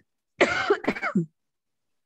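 A person coughing, a quick run of about three coughs lasting around a second, heard over a video-call connection.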